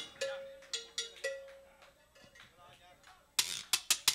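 A salsa band's percussion tapped loosely between songs: a couple of single strikes with a short bell-like ring, softer taps in the middle, then a quick flurry of louder, sharper hits near the end.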